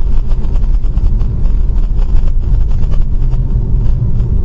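Steady low rumble of a car driving at speed, heard from inside the cabin by a dashcam: road and engine noise.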